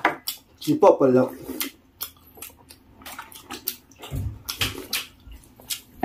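Close-miked eating noises: slurping, chewing and wet mouth sounds, with light clinks of dishes, loudest a little after four seconds in.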